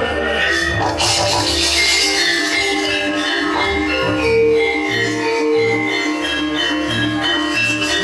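Javanese gamelan playing: ringing metallophone notes held over low kendang drum strokes, with a bright clatter of percussion about a second in.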